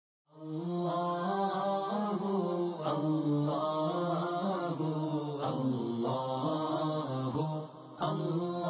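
Devotional chanting as intro music: a low, sustained, melodic voice line that starts about half a second in and pauses briefly just before the end.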